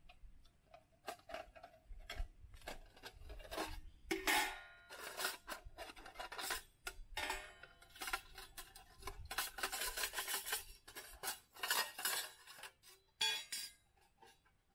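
A folding sheet-metal camp stove being unfolded and its plates slotted together: irregular clinks, scrapes and rattles of thin metal, some pieces ringing briefly.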